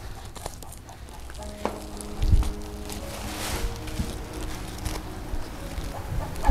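Crinkly rustling of a woven plastic sack being held and handled, with a low thump about two seconds in, over soft background music with long held notes.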